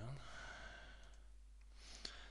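A man's soft breath into a close microphone: a long, quiet exhale just after he stops talking, fading over about a second, then a short intake of breath near the end.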